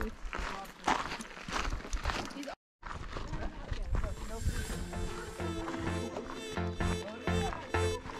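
Footsteps crunching on a dirt and gravel trail with a brief voice, then a sudden dropout to silence and background music with sustained notes and a steady beat starting about three seconds in.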